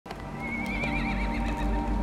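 A horse whinnies once, a high call about a second long whose pitch wavers more and more as it goes, over a low sustained music score.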